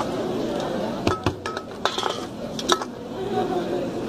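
A quick run of about six sharp clinks of small hard objects on a tabletop, some ringing briefly, heard over the voices of a busy room.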